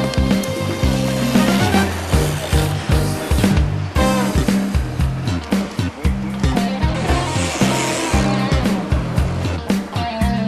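Background music with a steady beat and a repeating bass line.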